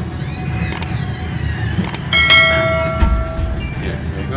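Subscribe-button animation sound effects: sweeping swooshes with two sharp clicks, then a bell-like ding about two seconds in that rings out and fades over a second or so.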